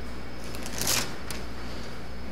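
Thin Bible pages being turned by hand: one brief paper rustle about halfway through, followed by a short flick.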